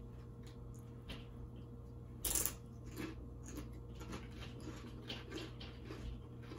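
Tortilla chips being chewed: a scatter of short, crisp crunches, the loudest a little over two seconds in.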